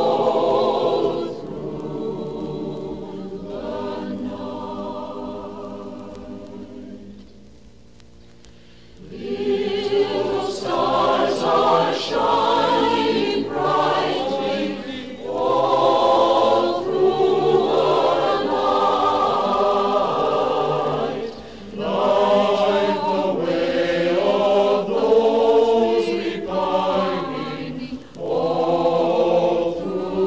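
Choir singing. A soft passage dies away over the first several seconds, then the full choir comes back strongly about nine seconds in and carries on.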